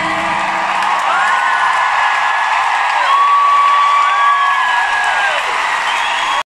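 Arena crowd cheering and whooping as the song ends. The band's final chord fades out in the first second, and several long, high screams ring out over the cheering from about a second in.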